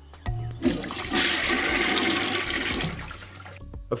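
A toilet flushing: a rush of water that swells about a second in and dies away a little before the end.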